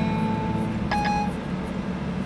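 A short electronic chime from the iPhone's Siri about a second in, after a spoken command, over a steady low hum.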